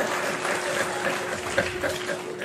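Live comedy audience applauding in response to a punchline: a dense, even clatter of many hands.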